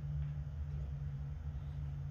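Steady low rumble of background noise, with no distinct event.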